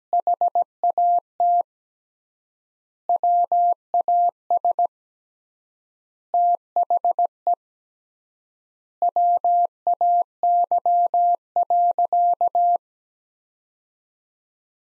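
Morse code sent as a single steady audio tone at 17 words per minute, keyed in short dots and longer dashes. The code comes in four word groups with long pauses of about one and a half seconds between them, since the word spacing is three times the standard. It stops shortly before the end.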